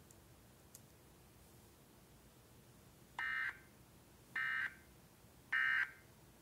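Emergency Alert System data tones: three short, identical warbling bursts about a second apart, starting about three seconds in. This is the pattern of the EAS end-of-message signal that closes an alert.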